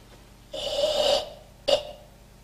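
Karateka breathing out hard as he crosses his arms and pulls his fists down into the ready stance at the start of a kata: one long breath out about half a second in, then a short sharp burst near the end.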